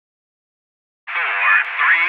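Silence for about a second, then a voice comes in sounding thin and narrow, as if heard over a radio.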